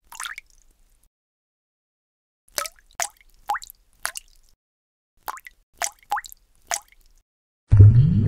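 Water-drop sound effects: about nine short drips and plops in a loose, uneven series, one on its own near the start, then the rest closer together. Just before the end a sudden, much louder low-pitched hit begins.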